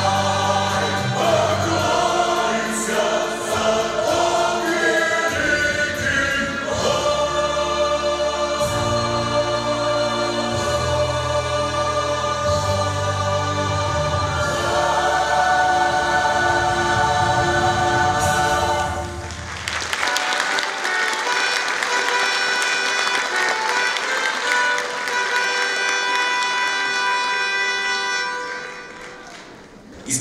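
A male soloist and a choir singing a patriotic war song over an instrumental accompaniment. About two-thirds of the way in the bass drops out and applause rises over a held final chord, then fades away near the end.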